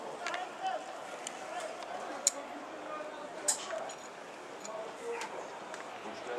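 Faint murmur of voices with two sharp clicks or knocks, the louder about two seconds in and another about a second later.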